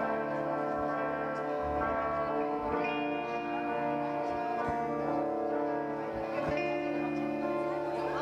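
Live band music: electric guitars playing an instrumental passage through amplifiers, sustained chords changing every second or two.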